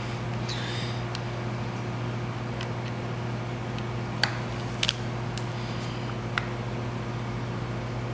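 Small sharp clicks, about four of them in the second half, as a metal control knob is handled and pressed onto the controller's shaft beside its acrylic case, over a steady low electrical hum.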